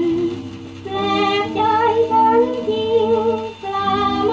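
An old Thai song playing from a 78 rpm shellac record: a sung melody with a wavering vibrato over instrumental accompaniment, with the top end cut off. It dips briefly just under a second in and again near the end.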